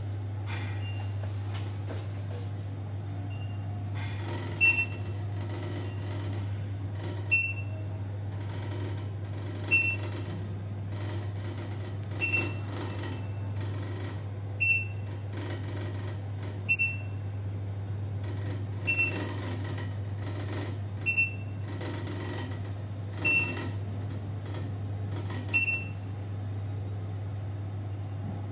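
OTIS passenger elevator car travelling upward with a steady hum. It gives a short high beep at each floor it passes, about every two and a half seconds, ten times in a row.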